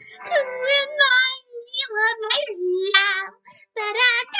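A high-pitched, cartoonish female voice impression singing a show tune, with a wavering vibrato on the held notes and short breaths between phrases.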